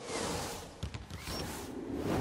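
Swooshing transition sound effects of a TV sports broadcast's animated logo graphic, with a couple of sharp clicks about a second in.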